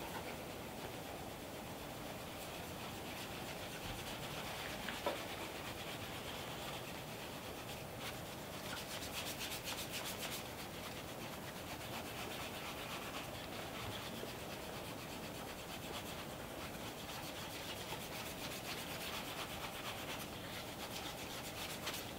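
Faint, steady rubbing of a cotton chamois cloth buffing Saphir Pate de Luxe wax polish, moistened with a little water, on a leather shoe's toe cap in small circular strokes, working the wax up toward a mirror shine. There is one light tap about five seconds in.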